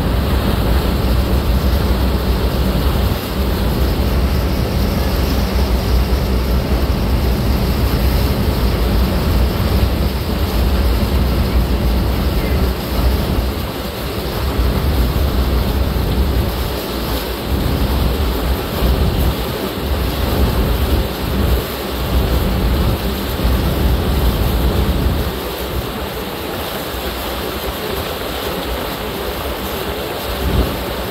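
Tugboat under way: white water churning in its wake over a steady low rumble, with wind on the microphone. From about halfway the low rumble turns uneven.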